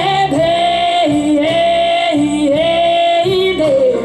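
A woman singing long held notes, with slides between them and no clear words, into a microphone over a live blues band of electric guitars, bass and drums.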